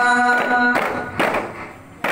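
Group singing holds a steady note that stops under a second in, followed by a few strokes on arabana frame drums that fade away.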